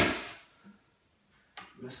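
Pneumatic air stapler firing a staple into the wooden frame of an insulation panel, a sharp shot at the very start that dies away within half a second.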